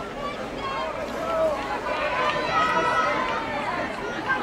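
People's voices: speech with some crowd chatter, growing louder about halfway through.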